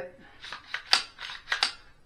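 An AR-9 pistol's charging handle and bolt being racked by hand: a series of sharp metallic clicks and clacks, the loudest about a second in.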